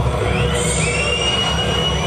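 Metal band playing live, loud and distorted, with a heavy low rumble of bass and drums. Over it, a high squealing guitar note slides upward and holds.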